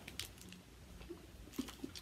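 Mostly quiet, with a few faint, short clicks and small soft noises scattered through it.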